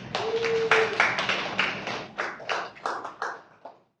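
Audience applauding, many hands clapping at once, thinning out over a few seconds and cut off abruptly near the end.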